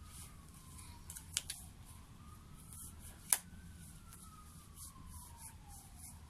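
A faint siren wailing slowly up and down, with two sharp clicks, one about a second and a half in and a louder one about three seconds in.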